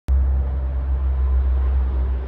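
Steady outdoor background rumble: a loud, even low rumble with a fainter hiss above it.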